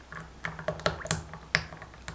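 Thick chocolate mousse mixture poured in a stream into a loaf pan: an irregular run of about six small wet pops and plops as the stream lands and bubbles burst on the surface.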